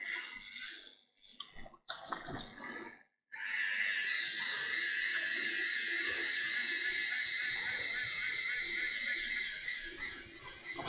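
MYNT3D 3D pen's small feed motor running as it pushes PLA filament out of the hot nozzle, giving a steady whirring hiss that starts suddenly about three seconds in. Before it there are only a few faint clicks of handling.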